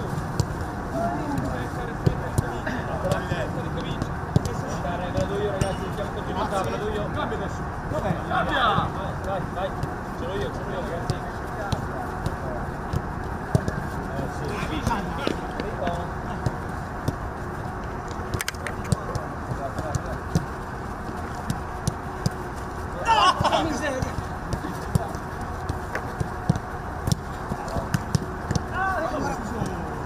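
Footballs being kicked back and forth in a close passing drill: irregular, sharp thuds of boots striking the ball. Indistinct shouts from players on the pitch come in now and then, loudest about two-thirds of the way through.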